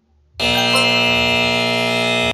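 Buzzer sound effect ('buzzer E major') starting about a third of a second in and holding one steady, bright tone: the 'time is up' signal at the end of a PowerPoint countdown timer.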